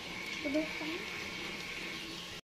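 Steady hiss of a home oven running while bread rounds bake inside, with a faint thin tone above it. A faint voice comes briefly, about half a second in.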